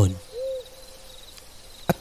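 An owl hooting once about half a second in, a short arched call that trails into a held note, with faint cricket chirps behind it.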